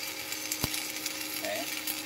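Stick (arc) welding on steel with a 3.2 mm electrode from an inverter welder: the arc's steady crackle and hiss with a faint steady hum, and one sharp click about a third of the way in. The arc burns evenly, which the owner takes as the sign of a very strong machine.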